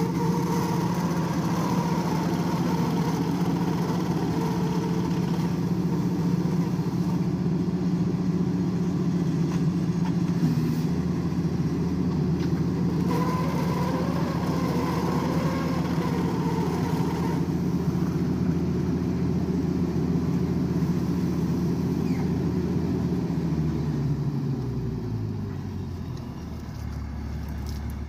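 The engine of a horizontal directional drilling rig runs loudly and steadily while it drives the drill rod into the ground. About 23 seconds in, its pitch falls as it slows down.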